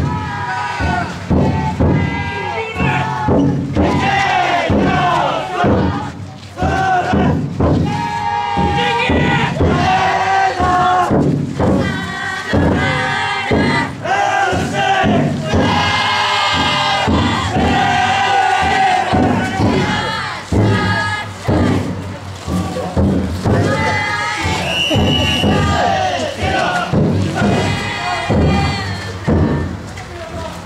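A large group of futon daiko bearers shouting call-and-response chants together as they carry and heave the heavy drum float, loud, overlapping voices repeated every second or two.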